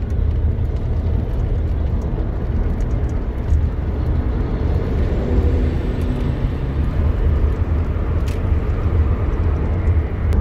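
A car's road and engine noise heard from inside the cabin while driving: a steady low rumble.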